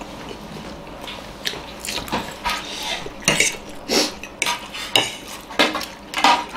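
Forks clinking and scraping against plates at irregular moments while several people eat noodles and dumplings, mixed with eating sounds.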